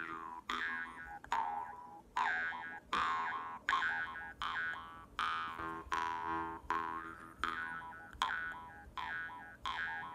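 Jaw harp plucked in a steady rhythm, about two twangs a second, each ringing over a low drone while the bright overtones sweep up and down as the player's mouth changes shape.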